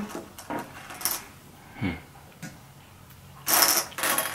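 Jelly beans clicking and rattling in a bowl as fingers sort through them, with a louder clatter near the end.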